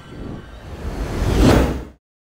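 A whoosh sound effect over a low rumble, swelling to a peak about one and a half seconds in, then dying away quickly.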